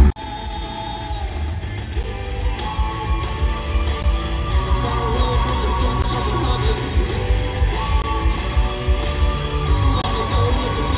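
Live rock band playing in an arena, a singer holding long notes over guitars and drums. It cuts in suddenly at the start.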